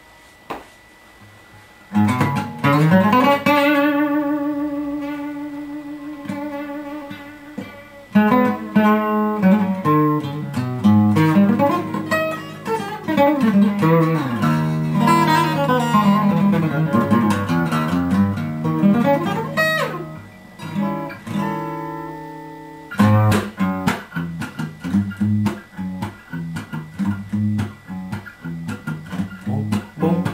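Acoustic guitar played solo, picked with the fingers. After a near-quiet start a chord rings out and slowly fades, then comes a busy passage of picked notes with a quick sliding run about twenty seconds in, another ringing chord, and a steady rhythmic bass-note groove over the last several seconds.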